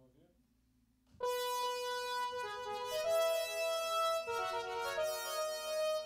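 Keyboard synthesizer patch played live: a bright, sustained chord comes in suddenly about a second in, and the notes within it shift every second or so as a line moves over the held chord.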